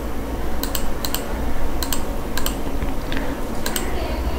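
Computer mouse clicking: about eight sharp clicks, several in quick pairs, over a steady low background hum.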